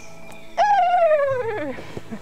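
A woman's voice imitating a spider monkey whinny: one long call starting about half a second in, sliding steadily down in pitch for just over a second.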